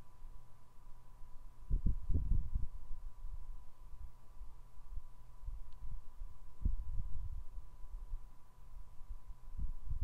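Soft, low thumps of a paintbrush dabbing paint onto a canvas lying on a table, in irregular clusters, with a faint steady hum throughout.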